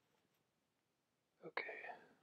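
Near silence, then about a second and a half in a man starts speaking softly, half under his breath.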